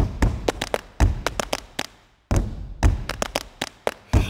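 Percussive opening of a pop song: sharp clicks and taps over deep kick-drum thumps, with no melody or voice yet. The beat drops out briefly a little past halfway, then starts again.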